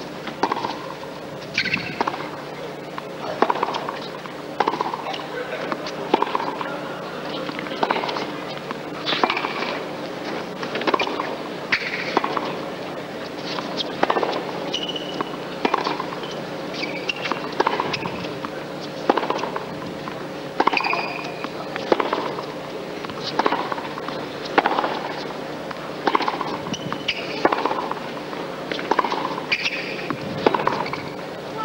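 Tennis rackets striking the ball back and forth in a long baseline rally, a sharp hit about every second, with a few short high squeaks between hits.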